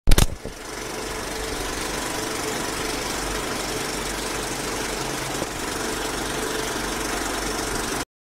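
Film projector sound effect: a loud click at the start, then a steady whirring mechanical clatter that cuts off suddenly at the end.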